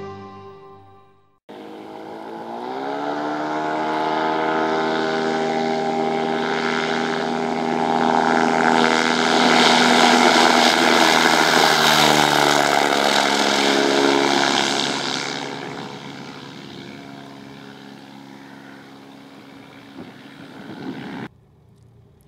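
Evolution Trikes Revo weight-shift trike's Rotax engine and propeller running at power. Its note rises about two seconds in, grows loudest as the trike passes close, drops in pitch around its passing, then fades away and cuts off suddenly near the end.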